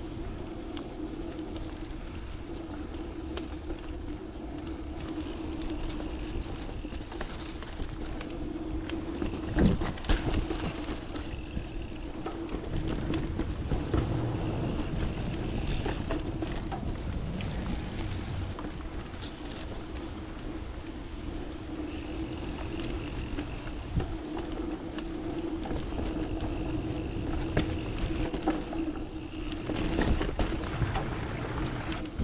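Mountain bike rolling over a dirt singletrack trail: steady tyre rumble and rattling from the bike, with a couple of sharp knocks about ten seconds in.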